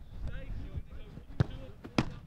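Two sharp thuds of a football about half a second apart, the second the louder: a shot struck at goal and the goalkeeper's diving save. Faint voices can be heard behind them.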